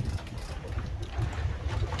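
Fishing boat's outboard motor running low and steady, a low rumble with wind buffeting the microphone.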